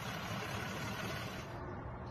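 Steady outdoor background noise at a roadside, with no distinct event; the high end drops away about one and a half seconds in.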